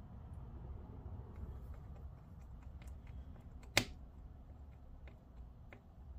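Screwdriver turning small screws into a laptop's metal chassis: faint handling rustle and small scattered ticks, with one sharp click about two-thirds of the way through.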